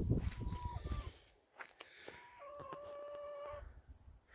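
Faint bird calls: a short, steady-pitched call about a third of a second in, then a longer, steady call of about a second from about two and a half seconds in. A low rumble runs through the first second.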